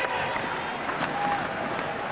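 Steady crowd noise in an ice hockey arena during play, with a short voice heard through it about a second in.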